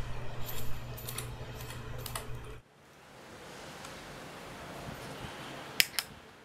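Faint small clicks and ticks of a metal filter adapter ring being turned onto a Fujifilm X100's lens by hand, with one sharper click near the end.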